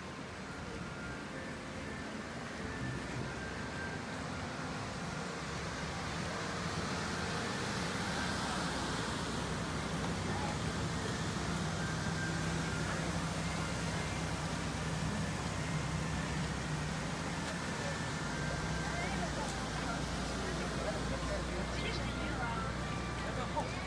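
Street noise: people chattering in the distance, and a car engine running close by. It grows gradually louder, with a steady low hum joined near the end by a deeper rumble.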